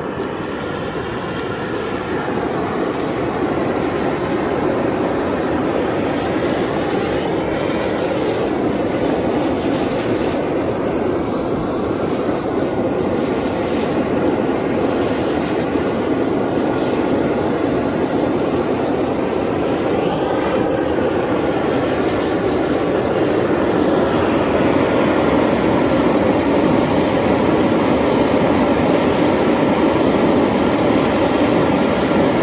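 Fumarole jetting steam continuously from a vent in the ground, a steady rushing hiss that grows slightly louder over the first few seconds. It is working non-stop.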